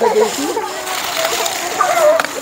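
Large bottle gourd leaves rustling and brushing as someone pushes through the dense vines, with indistinct talk over it.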